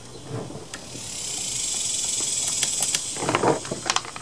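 A high, steady insect buzz swells in about a second in and holds, with a few light clicks and a short rustle as chainsaw parts are handled.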